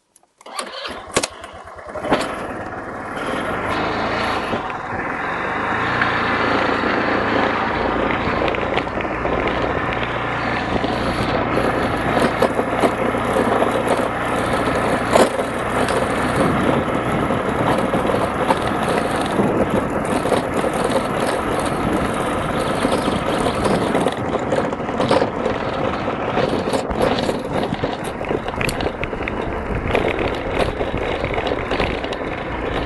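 A 150cc scooter engine is cranked briefly and catches about a second in. It then runs steadily as the scooter rides off, with engine and road noise building over the first few seconds and holding level after that.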